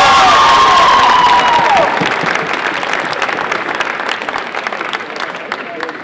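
Audience applauding, with a long high cheer over the first two seconds. The clapping then thins out and dies away toward the end.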